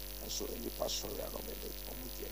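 Steady electrical mains hum with a buzz of evenly spaced overtones in the audio line.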